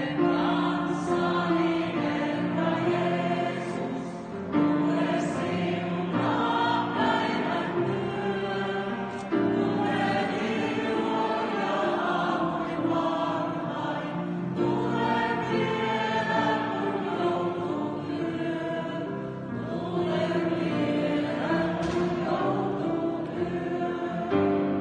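A mixed group of men's and women's voices singing a song together as a choir.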